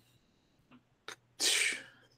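A person's short, hissy burst of breath into a podcast microphone about a second and a half in, after a faint click.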